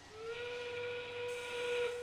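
FIRST Robotics Competition field's endgame warning sound, a single steady whistle-like tone held for nearly two seconds, signalling 30 seconds left in the match.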